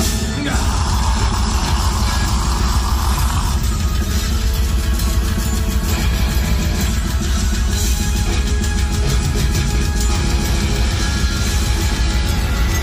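Heavy metal band playing live at full volume: distorted electric guitars, bass guitar and drums, heard from the crowd through the stage PA.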